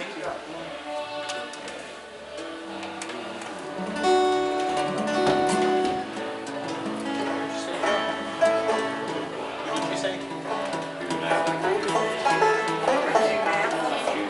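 Banjo and fiddle playing in a small acoustic string group, with people talking over the music.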